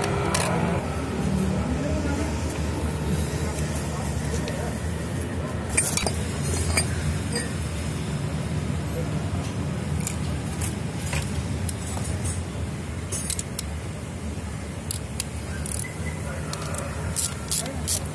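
Small metal parts and hand tools clinking: scattered light metallic clicks and jingles as nuts, washers and a wrench are handled around an AC compressor clutch, over a steady low rumble of traffic.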